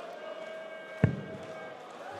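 A steel-tip dart thuds into the dartboard once, about a second in, over the low murmur of a hushed arena crowd.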